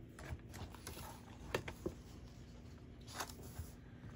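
Faint handling of a sliding paper trimmer and red cardstock: soft rustle with a few light clicks, about one and a half seconds in, just after, and again past three seconds, as the paper is repositioned and the trimmer's clear arm is worked for the next cut.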